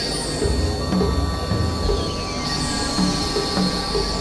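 Experimental electronic drone and noise music: sustained high, squealing synthesizer tones over a low throbbing drone. A steady mid-pitched tone enters about a second in.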